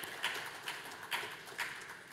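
Hand claps thinning out: a few slow claps, spaced about half a second apart, fading away.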